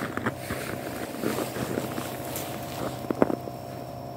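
Footsteps crunching in snow, irregular, with one sharper crunch a little after three seconds in, over a steady hum and wind on the phone's microphone.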